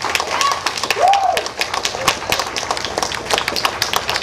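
Audience clapping and cheering, with one rising-and-falling whoop about a second in.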